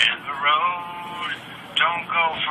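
A voice playing back from a mobile phone's small speaker, with its pitch sliding up and down and almost nothing in the upper range.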